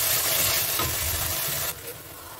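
Blended green spice paste sizzling in hot oil in an aluminium pressure-cooker pan as a wooden spatula stirs it, frying out the paste's raw smell. The sizzle cuts off suddenly near the end.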